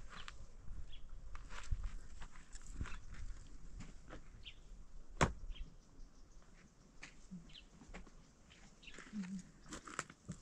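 Footsteps scuffing and crunching on stony dirt ground, with scattered small clicks of loose stones and one sharp knock about five seconds in. A few short high chirps sound in between.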